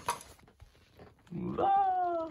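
A short click at the start, then a single drawn-out meow about one and a half seconds in, rising and then held for about a second.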